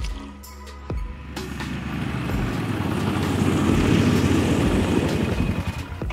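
Background music with a steady beat, under the low rumble of a four-wheeler's engine that grows louder as the machine drives up, is loudest about four seconds in, and drops away near the end as it stops.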